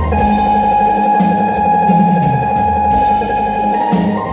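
Electronic keyboard playing an instrumental passage of a Vietnamese ballad: one long held note over a bass line that moves up and down.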